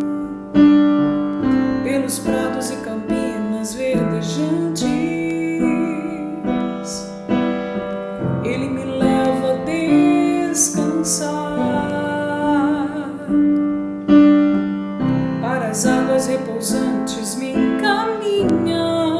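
Electronic keyboard with a piano sound playing held chords, the chords changing every second or two, while a woman sings the psalm melody over it.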